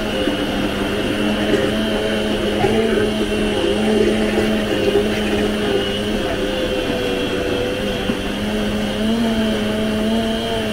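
High-speed countertop blender running at full speed with its tamper worked through the lid, a steady loud motor whine whose pitch wavers slightly as the thick mixture loads the blades.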